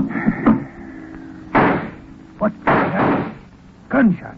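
Radio-drama sound effects: a click as the call-box phone is hung up, then two loud reverberant gunshots about a second apart, over a low steady hum.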